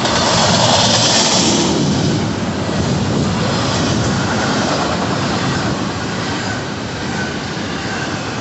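Double-stack intermodal container well cars rolling past close by: a steady rumble and clatter of steel wheels on rail, loudest in the first two seconds.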